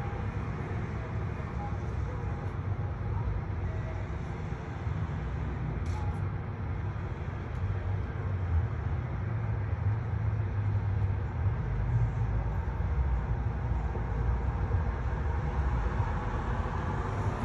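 Low, steady vehicle rumble from the street, growing somewhat louder about halfway through.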